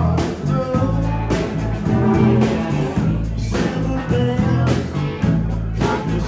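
Live band playing an upbeat rock-and-roll number: electric guitars over a steady bass line and beat.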